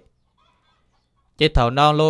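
Silence for over a second, then a man's voice comes in with a long drawn-out call that rises and falls in pitch.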